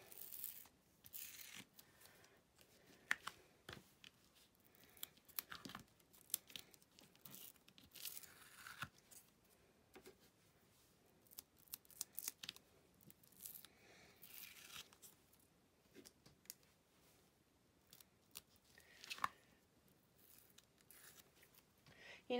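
Faint, intermittent peeling and rustling: strips of green masking tape being pulled off a sticky cutting mat, with the sheet of gold foil crinkling as it is handled. Scattered small clicks and scrapes come between the rustles.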